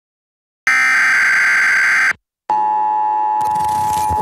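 Electronic phone-line tones in the style of a dial-up modem: a high steady tone with a hissy edge for about a second and a half, a short break, then a lower steady tone that holds, with more of the track's sound coming in near the end.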